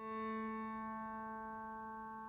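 Steady synthesized tone on the note A from an on-screen piano key in an iPhone app, held and slowly fading. It is played when VoiceOver activates the A key.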